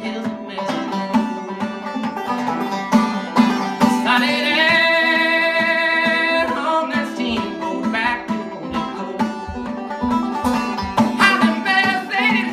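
A man singing a folk song to his own banjo picking, the plucked banjo notes running steadily under the voice. About four seconds in he holds one long note for a couple of seconds.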